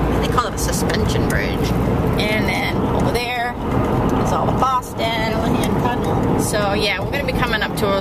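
Steady road and engine noise inside a car cabin moving at highway speed. Voices come and go over it.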